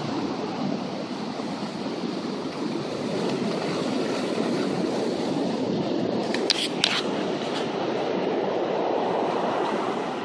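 Ocean surf breaking on a sandy beach, a steady rushing noise. Two sharp clicks come close together about six and a half seconds in.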